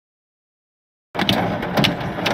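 Silence, then about a second in a hailstorm starts abruptly: a loud, dense clatter of hailstones striking, with many sharp cracks of individual impacts.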